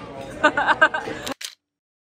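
A woman laughing, followed by a double-click camera shutter sound as a snapshot is taken, after which the sound cuts to dead silence.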